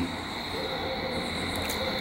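Steady background noise with a thin, continuous high-pitched whine, in a pause between words.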